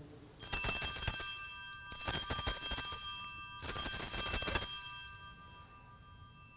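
Altar bells, a cluster of small hand bells, shaken in three rings of about a second each, their high tones lingering and fading after the last ring. The bells mark the elevation of the chalice at the consecration.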